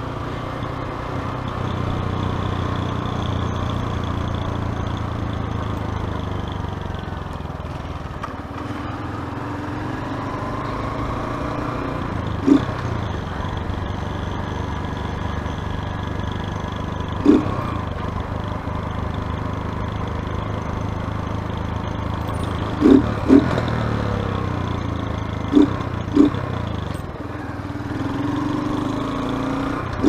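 Small motorcycle engine running steadily at road speed, its pitch slowly rising and falling with the throttle. Several short, sharp beeps stand out above it, twice in quick pairs.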